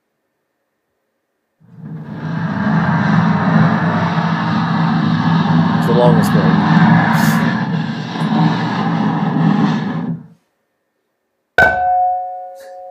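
Playback over speakers of recorded source sounds for a laptop music piece: a long, dense, steady sound of about eight seconds that cuts off suddenly, then near the end a sharp struck attack with a ringing, pitched tail.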